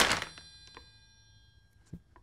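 A crunching, crumpling noise from a squeezed potato-chip tube dies away in the first half second. A bright bell-like chime with several high tones rings on, fading, with a faint click near the end.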